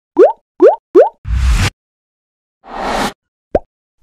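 Motion-graphics sound effects: three quick rising "bloop" pops in the first second, then a whoosh with a low thud, a second softer whoosh, and a short pop near the end.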